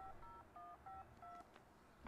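Faint touch-tone telephone keypad dialing: a quick run of about five short beeps, each a pair of tones sounded together.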